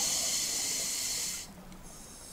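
Scuba regulator hissing as the diver draws a breath underwater; the hiss stops abruptly about one and a half seconds in.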